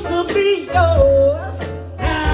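Live soul-blues performance: a woman singing into a microphone, holding one long note about halfway through that bends and wavers, over keyboard and drums.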